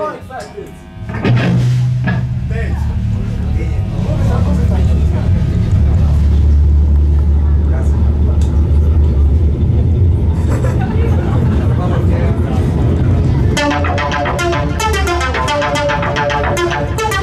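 Live metal band opening a song: after a brief pause, low guitar and bass notes are held as a long drone. About 13 seconds in, the drums and the rest of the band come in at full volume.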